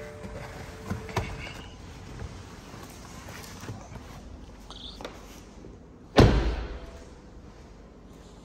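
A BMW 520d's driver's door opened with a couple of light clicks and some rustling as someone climbs out, then shut with a single solid thud about six seconds in.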